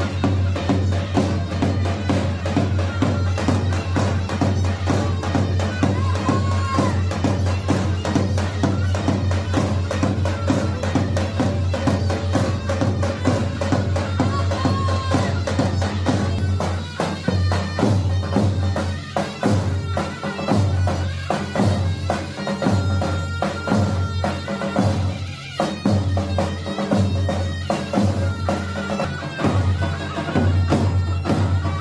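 Zurna (Kurdish shawm) and davul drum playing a folk dance tune: a loud, reedy melody over steady drum beats.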